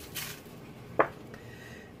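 Salt sprinkled by hand onto sliced zucchini on a foil-lined baking sheet, a brief light hiss, with a single sharp clink about a second in.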